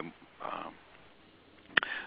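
A man's hesitant voice over a telephone line: a short filler murmur about half a second in, a quiet pause, then a single sharp click just before the end.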